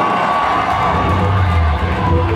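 Live metal band's amplified electric guitar and bass holding a sustained chord, with a low bass note coming in about half a second in, over a crowd cheering and whooping.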